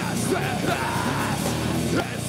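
Live nu-metal band playing, with the vocalist yelling lyrics into the microphone over the heavy band.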